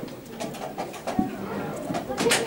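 Wooden chess pieces set down and chess clock buttons pressed during blitz play: several light clicks and a louder knock a little over a second in, over a murmur of voices in the hall.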